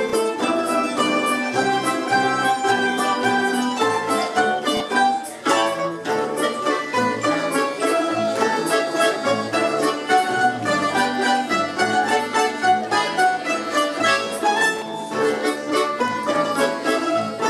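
Russian folk-instrument orchestra of domras and balalaikas playing an ensemble piece, many plucked strings sounding together. There is a brief pause about five and a half seconds in.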